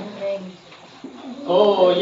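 A group of voices sings a Hindi song in unison, breaks off for a short pause holding only a brief low note, and starts singing again about one and a half seconds in.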